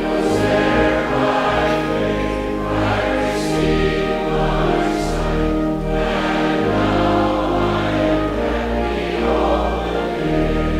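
Church congregation singing a hymn together over instrumental accompaniment, the words drawn out on long held notes above a sustained bass.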